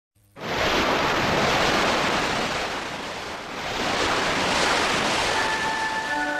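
Rushing sound of ocean waves that swells in at the start, ebbs slightly about halfway through, and swells again. Sustained music tones come in near the end.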